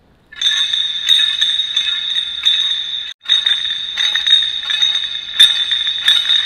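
Background music: a bright, jingling track with a regular beat. It drops out briefly about three seconds in.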